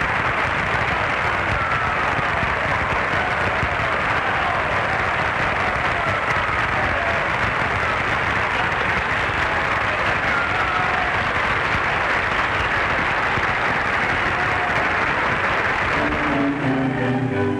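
Large audience applauding, a steady dense clapping that carries on without a break.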